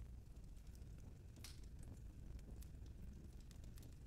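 Near silence: quiet room tone with a few faint clicks.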